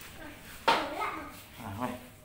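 Brief, faint background voices, one of them a child's, with a sudden sharp sound about two-thirds of a second in.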